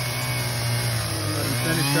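Chainsaw engine running steadily, its pitch sagging through the middle and rising again near the end as it is revved.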